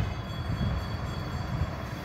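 Steady low background rumble between spoken phrases, with a few faint high steady tones above it.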